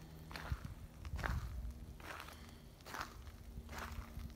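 Footsteps on a gravel track, a steady walking pace of about six steps, each a little under a second apart.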